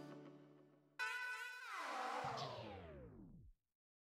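Background music fading out, then a short musical phrase about a second in whose pitch slides steadily down as it slows to a stop, like a tape winding down, cutting to silence about three and a half seconds in.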